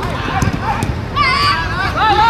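Players and onlookers shouting during a goalmouth scramble in an amateur football match, with a few dull thuds in the first second and a loud, high-pitched shout starting about a second in.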